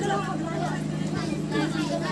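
Overlapping voices of players and onlookers talking and calling out across a football pitch, over a steady low hum.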